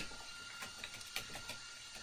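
Faint computer keyboard keystrokes: about a dozen light, irregular clicks as characters are typed.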